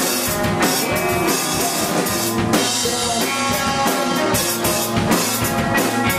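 A post-hardcore band playing live and loud: electric guitar over a full drum kit, with drum and cymbal hits coming thick and fast.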